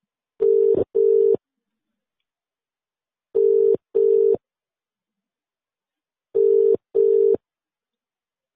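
Telephone ringback tone heard by the caller while waiting for an answer: three double rings, each a pair of short steady tones, about three seconds apart.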